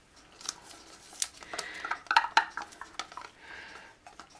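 A plastic paint cup being handled and scraped with a wooden stirring stick: a series of sharp clicks and taps, with short scraping sounds between them.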